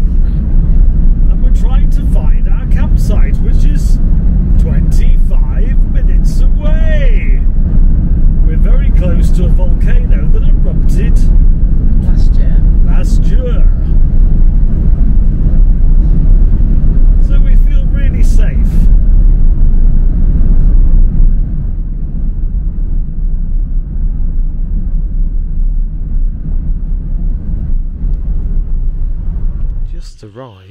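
Road and engine noise heard inside a moving camper van: a steady low rumble that turns noticeably quieter about two-thirds of the way through.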